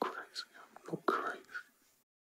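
A person whispering a few short, breathy words after the music cuts off.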